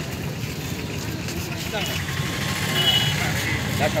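A motor vehicle's engine running steadily, with scattered voices of people talking from about two seconds in and a brief high double beep near the end.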